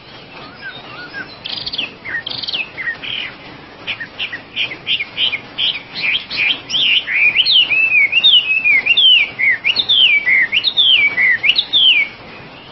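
Chinese hwamei singing: scattered short, sharp notes build, about halfway through, into a loud run of varied whistled phrases that swoop up and down in pitch.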